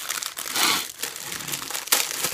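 Food packaging crinkling as it is handled, with a louder rustle about half a second in and a sharp snap near the end.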